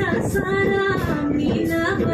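Music: a song with a woman's voice singing held, gliding notes over instrumental backing, playing for a dance.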